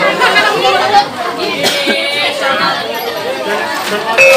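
Chatter of a group of people talking over one another, with no instruments playing.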